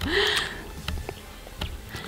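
A short, breathy laugh, then a low, quiet background rumble with a few faint clicks.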